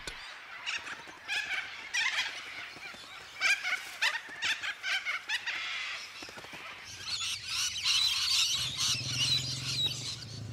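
A flock of little corellas screeching, with many short, harsh calls overlapping. About seven seconds in, this gives way to a denser, higher chattering of rainbow lorikeets, with a low steady hum underneath near the end.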